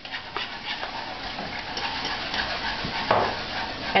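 A utensil stirring and scraping a skillet of hot pan sauce on a gas stove, with scattered small clicks over a steady sizzle.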